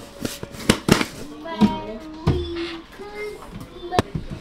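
A few sharp clicks and taps in the first second as a plastic-lidded seasoning shaker jar is handled and its lid closed. These are followed by an indistinct voice for a couple of seconds.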